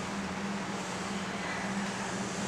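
Steady room tone: an even hiss with a constant low hum underneath, no other sound.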